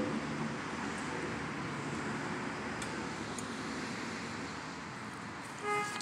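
Steady outdoor background noise, an even rush like distant road traffic, with no distinct nearby sound. A brief held pitched tone comes in just before the end.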